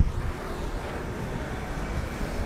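Steady low rumbling noise with a light hiss, even in level, with no distinct knocks or tones.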